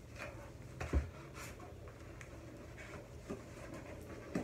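Faint rustling and handling of packaging as items are taken out of a box, with one louder thump about a second in.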